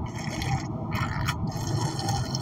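A person sipping a drink close to the microphone: two short, noisy sips, the second about a second in, over a steady low rumble.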